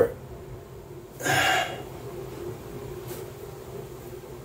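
A man's single short, sharp breath, about a second in, with a faint steady hum behind it.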